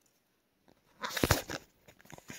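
A camera being dropped: near silence, then about a second in a cluster of sharp knocks and rustling as it falls and is handled.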